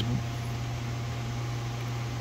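A steady low hum with an even hiss over it, like a fan or air-conditioning unit running, with no distinct event.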